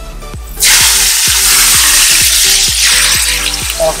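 Hot oil tempering of dried red chillies, green chillies and curry leaves poured into a coconut-milk curry, sizzling loudly. The sizzle starts suddenly about half a second in and eases slowly.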